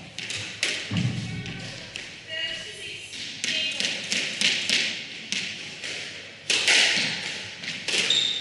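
Squash rally on a wooden court: the ball smacks sharply off rackets and walls in a string of impacts, about one every half second to second, the loudest near the end. Between them come deeper thuds of footfalls and short high squeaks of court shoes on the floor.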